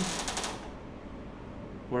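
A short run of fast clicks in the first half second, then quiet room tone with a faint low hum.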